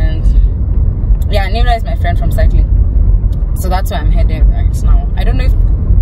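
Car driving, heard from inside the cabin: a steady low road and engine rumble, with a woman talking over it in two short stretches.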